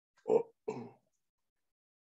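A woman clearing her throat, two short bursts in quick succession.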